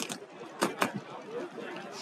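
Faint background chatter of players and spectators, broken by a few sharp clicks or pops, two of them close together a little after halfway.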